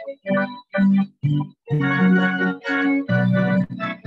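Electronic keyboard with an organ sound playing a slow melody, one held note after another with short gaps between them.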